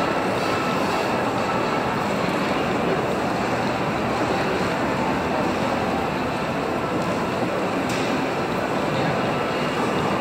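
Steady, even hubbub of a crowd of pedestrians and their voices echoing under a covered shopping arcade roof, with no single sound standing out.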